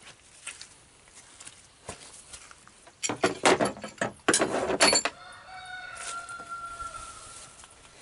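A rooster crowing once, starting about three seconds in and ending in a long held note that fades out shortly before the end.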